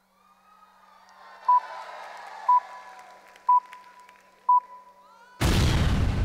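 Suspense sound effect for a result reveal: four short electronic beeps about a second apart over a faint steady tone, then a loud deep boom near the end. Faint audience noise runs underneath.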